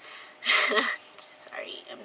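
A woman's breathy, whispered voice, loudest in a short burst about half a second in, then fainter breathy sounds.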